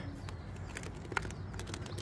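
Faint handling noise from a gloved hand working among lifted asphalt roof shingles: scattered light clicks and scrapes, one sharper click about a second in, over a low hum.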